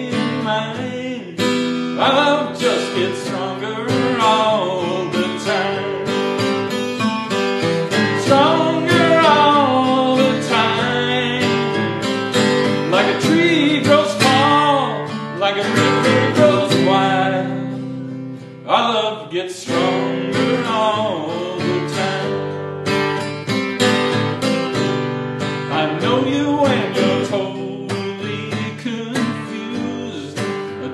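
A man singing a country-rock song to his own guitar accompaniment, live and solo, with a brief drop in level about two-thirds of the way through.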